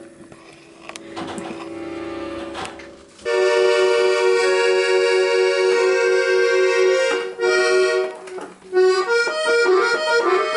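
Piano accordion being tried out. A soft held chord opens; about three seconds in a loud chord comes in and is held for some four seconds, then shorter, changing chords follow near the end.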